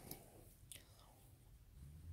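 Near silence, with two faint soft rustles, one at the start and one about three quarters of a second in, from sheer polka-dot netting fabric being handled.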